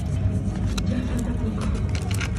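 Cinema sound system playing the pre-show soundtrack: music over a heavy low rumble, with a few short crackles of a paper food wrapper being handled.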